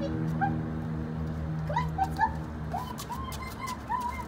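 A young Mini Bernedoodle whining in short, high yips, coming several in a row in the second half.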